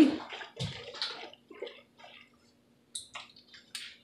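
A bottle of apple cider vinegar being shaken, the liquid sloshing inside to stir the mother up off the bottom. The sloshing comes in uneven bursts that die down after about two seconds, and a couple of light clicks follow near the end.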